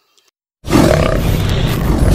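Near silence, then about half a second in a loud, dense sound effect with a deep rumble cuts in abruptly: the opening of an animated outro sting.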